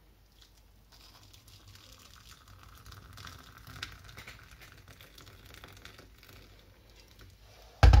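Freshly boiled water poured from an electric kettle into a mug: a soft splashing stream that builds, then tapers off. Near the end comes a knock as the kettle is set back on its base.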